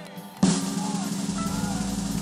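Snare drum roll, starting suddenly about half a second in and holding steady.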